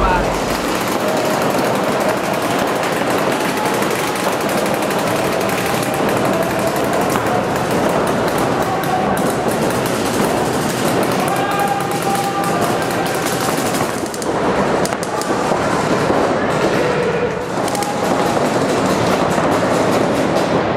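Paintball markers firing rapid strings of shots on an indoor field, echoing in the hall, with players shouting over them. The firing is dense for about fourteen seconds, then thins out.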